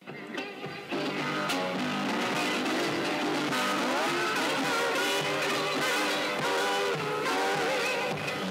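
Guitar playing a blues phrase with bent, sliding notes. It starts abruptly out of silence and fills out about a second in.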